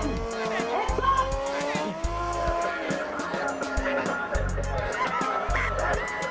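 Music with a heavy bass beat from a sound system, with a motorcycle engine revving as a stunt rider rides a wheelie.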